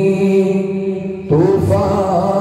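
A man's solo voice chanting a naat, a devotional Urdu poem, into a microphone: one long held note, then a brief break a little over a second in and a new phrase starting with a rising slide in pitch.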